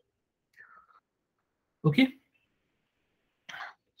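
Near silence in a pause in a man's talk, with one spoken "okay?" about two seconds in and a short intake of breath near the end.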